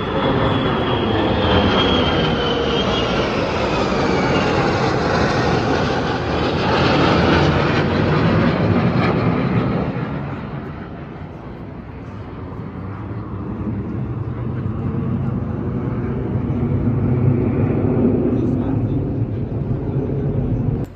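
Formation of jet aircraft flying over: loud engine noise with a high whine that falls in pitch over the first few seconds. The noise fades about halfway through and swells again near the end.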